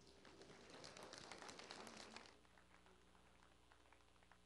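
Faint applause from a church congregation. It dies away a little over two seconds in, leaving a few scattered claps.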